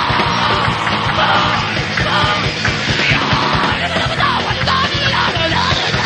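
A live band playing loud, fast music with shouted vocals over distorted guitars and dense drumming, recorded live in a raw, lo-fi way.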